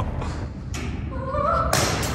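A metal clamp falling from the raised plank and hitting the concrete floor below with one sharp impact near the end, after soft laughter and a faint voice.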